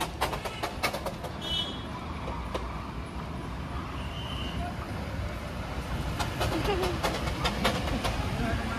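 Darjeeling Himalayan Railway toy train running past close by: a steady low rumble, with runs of sharp clicking near the start and again near the end.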